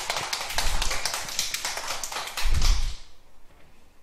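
A few people clapping: a quick, irregular run of sharp claps that dies away about three seconds in, with a low thump near the end.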